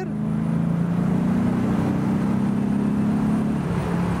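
A Morgan Plus 8's 3.9-litre Rover V8 pulling steadily, heard from the open cockpit with wind rushing past. Its pitch climbs a little, then drops away near the end as the driver works the gear lever.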